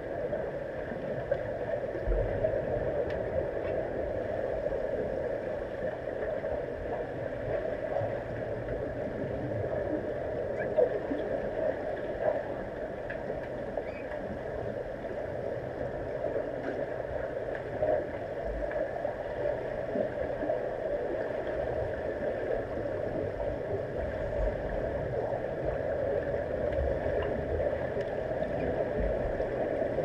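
Underwater swimming-pool ambience heard through a submerged camera housing: a steady, muffled hum and hiss with faint clicks and a few low thumps.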